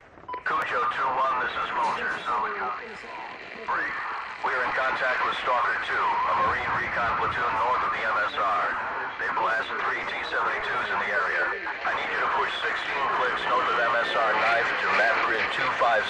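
Continuous talk with a thin, narrow-band sound typical of voices over a radio, starting about half a second in.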